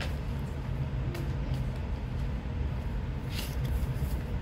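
Electric fan running steadily in a small room, a low rumble, with a brief rustle near the end.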